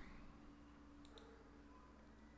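Near silence: room tone with two faint computer mouse clicks about a second in.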